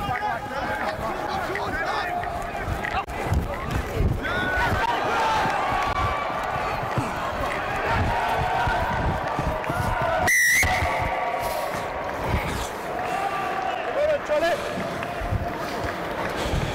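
A referee's whistle blown once, briefly, with a warbling trill about ten seconds in, marking the try being awarded. Players' shouts and calls carry on around it.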